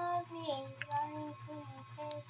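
A child singing, holding long notes that slide gently between pitches, over a steady low hum.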